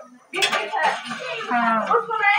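Clatter of steel kitchen utensils against a steel cooking pot, starting sharply about a third of a second in.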